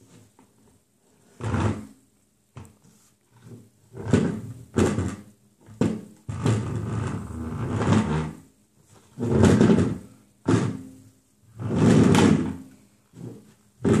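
Plastic step stool pushed and dragged across a wooden tabletop, scraping and knocking in repeated bursts, some short and one lasting about two seconds.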